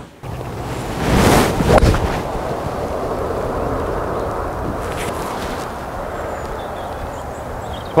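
Wind buffeting the microphone on an open golf tee, with a golf club (a three wood) striking a teed ball.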